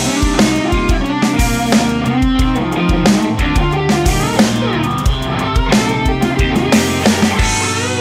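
Electric guitar playing a funky jazz-fusion solo of quick melodic lines over a backing track with drum kit, a kick drum thumping steadily underneath.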